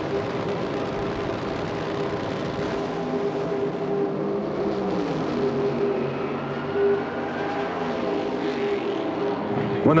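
Two Funny Cars' supercharged V8 engines running hard down a drag strip on old race-film audio. It is a steady engine drone, with a pitch that climbs slowly through the middle of the run.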